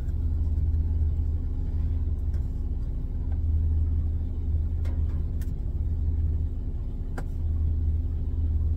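Steady low rumble of an idling truck engine, heard from inside the sleeper cab. A few light knocks and clicks over it, about five and seven seconds in, as hands work behind the cabinet.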